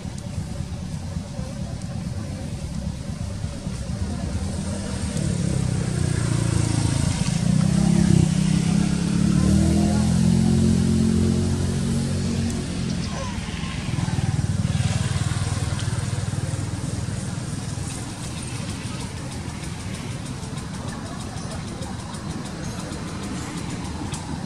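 A motor vehicle's engine going past, a low drone whose pitch slowly rises and falls; it swells from about four seconds in, is loudest a few seconds later, and fades away after a brief second swell.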